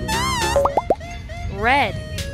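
Cartoon-style sound effects over children's background music: a wobbling tone at the start, a couple of quick rising plops about half a second in, then a short rising-and-falling voiced call near the end.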